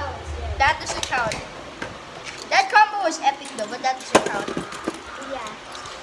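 Children talking, with a single sharp click about four seconds in from a plastic Beyblade top being handled and snapped together.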